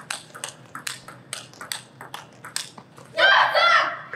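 Table tennis rally: the plastic ball clicks off bats and table in quick alternation, about three to four hits a second. It ends near the end in a loud, high-pitched shout.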